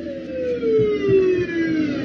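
Emergency vehicle siren wailing, its pitch falling steadily over about two seconds.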